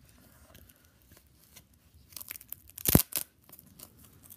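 Hands handling a small battery pack and its plastic pull tabs: faint rustling, then about two seconds in a short spell of crackling and rasping, loudest in one sharp rip just before three seconds in.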